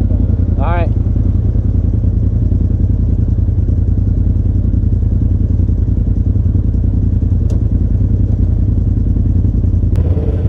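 Polaris RZR side-by-side engine idling steadily at about 1200 rpm while stationary.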